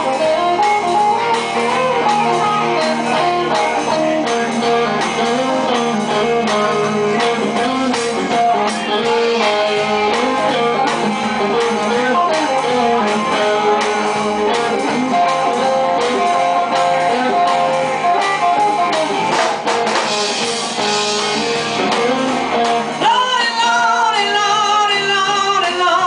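Live band playing a blues-rock song on guitars with drums, a mostly instrumental stretch; a woman's singing voice comes in near the end.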